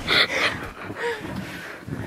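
A person's breath: two quick, sharp, gasp-like breaths near the start, then fainter breathy sounds.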